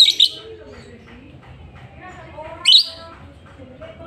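Lovebird giving short, shrill, high-pitched calls: two close together at the start and one more a little under three seconds later.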